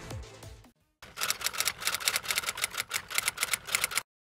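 The tail of an electronic music sting fades out. After a short gap comes a rapid run of computer keyboard typing clicks, about three seconds long, as a search query is typed, stopping abruptly.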